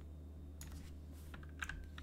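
Computer keyboard typing: a few separate keystrokes in the second half as digits are entered, over a faint steady low hum.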